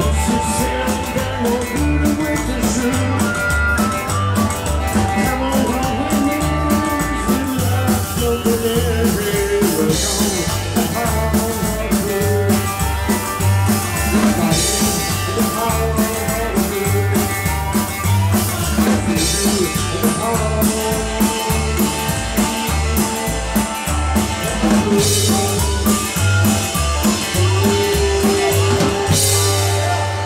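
A live rock and roll band playing loudly: drums, upright double bass, guitars and harmonica, with a steady pulsing bass line. The band is still going at the end of the stretch, then the music drops back as the crowd starts to cheer.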